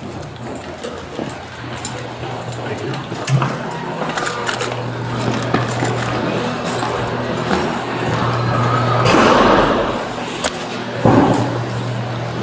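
Footsteps and light clinks of duty gear over a steady low hum, with a louder rush of noise lasting about a second some nine seconds in.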